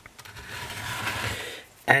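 Scraping and rubbing as the tin-plate shield cone around a cathode ray tube is handled and shifted on a wooden baseboard, swelling over about a second and then fading.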